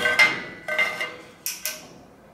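Steel parts of a hand-made spring-loaded push-button hinge clinking against one another: about five sharp metallic strikes, each with a short ringing note, as the mechanism is pressed and the piece springs up.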